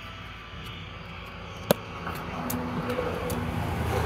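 Steady engine noise of a passing vehicle that grows gradually louder. Over it come faint clicks of a tarot deck being shuffled by hand, with one sharper click a little before halfway.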